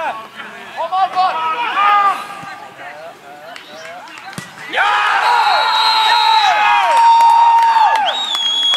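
Footballers shouting on the pitch, then a single sharp thud of the ball being struck about four and a half seconds in. Right after it come loud, overlapping, long-held shouts from several men, the cheer that greets a goal.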